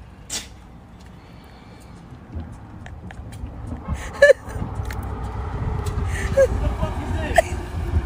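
Low rumble of a box delivery truck driving along the street, growing louder through the second half. A sharp click sounds about four seconds in.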